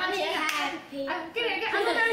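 A few people clapping, mixed with children's and adults' excited voices.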